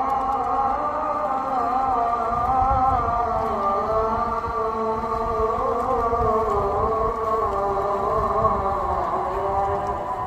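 A slow chanted melody, one voice held and gliding gently in pitch without pauses, over a steady low rumble.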